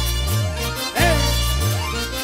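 Andean carnival music played live by a brass-and-string band: trumpets and guitars over a strong, pulsing bass line in a steady dance rhythm.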